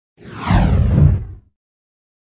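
Intro whoosh sound effect with a deep rumble underneath, sweeping downward in pitch. It lasts about a second and then cuts off.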